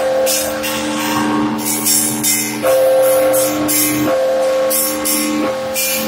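Bronze church bells rung by hand with clapper ropes: small bells struck in a quick pattern, about two to three strikes a second, over the long ringing tones of larger bells, which are struck again every second or two.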